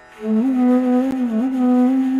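A bansuri (Indian bamboo flute) comes in about a quarter second in with a loud, low sustained note, sliding gently between neighbouring pitches in a raga phrase, over a quiet steady drone.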